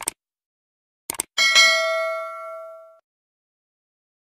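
Animated subscribe-button sound effects: a mouse click at the start, a quick double click a second later, then a notification-bell ding that rings out and fades over about a second and a half.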